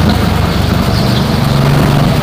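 Go-kart engine running at steady speed, heard from on board the kart, with other karts' engines mixed in.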